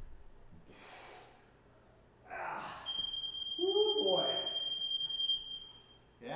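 A man breathing hard and gasping after an exercise, with a short strained groan, while a long steady electronic beep sounds for about three seconds from about three seconds in.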